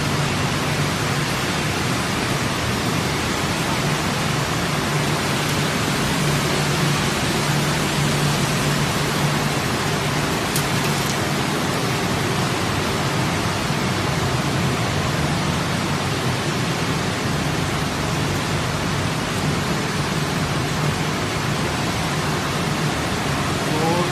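Machinery of a continuous crayfish frying and cooling line running: a steady, even hiss over a constant low hum, with no change throughout.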